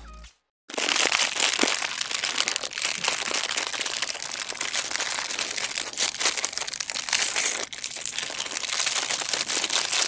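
Loud, dense crinkling and crackling of hands handling something right at a small lavalier microphone. It starts suddenly under a second in and goes on without a break, except a brief dip past the middle.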